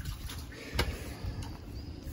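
Faint handling sounds from hands working a skinned rabbit carcass: a couple of short soft clicks, one about a second in, over a low rumble.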